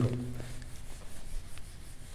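Handheld eraser rubbing across a whiteboard in repeated quiet strokes, wiping off marker writing.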